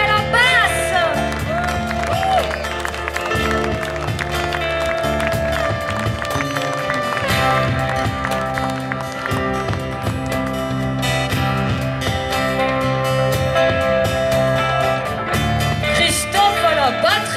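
Live band playing: a steady bass line under held melody notes, with sliding, bending notes in the first second.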